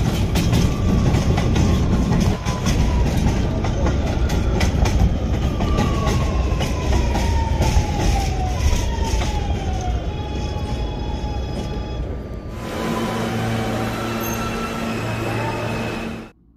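Subway train running on the rails, with rapid clicks of the wheels over the track and a whine that falls in pitch several times as it slows. About three-quarters of the way in the sound changes to a steadier low hum.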